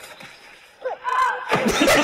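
A woman's short, drawn-out cry of "oh" as she drops toward the water, then, about half a second later, a sudden loud splash as she hits it, with voices over it.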